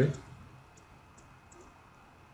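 A few faint computer mouse clicks at irregular intervals, light and short.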